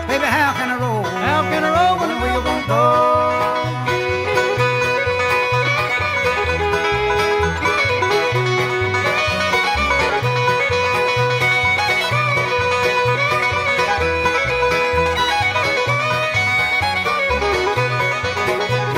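Bluegrass string band playing an instrumental break between sung verses, long held melody notes over a steady bass beat.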